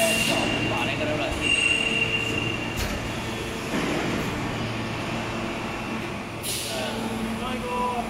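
PET preform injection moulding machine running its cycle as the mould closes: a steady hum with a high whine, a click about three seconds in and a short hiss around six and a half seconds.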